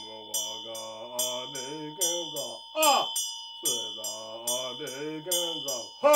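A man chanting a Tibetan Buddhist mantra in a low voice, in long phrases, while a handheld Tibetan prayer bell (drilbu) keeps ringing with a steady high tone under the chant.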